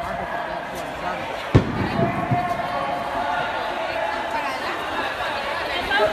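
Several people talking at once, with one sharp knock about one and a half seconds in, the loudest sound, and a couple of softer knocks just after.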